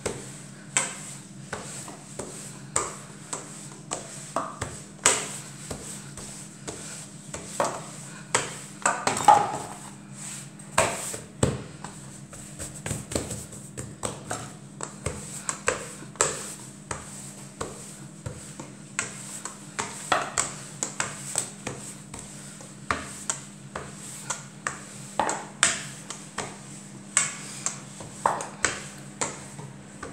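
A metal rolling pin with plastic handles rolled back and forth over laminated dough on a wooden board, giving irregular clicks and knocks, several a second.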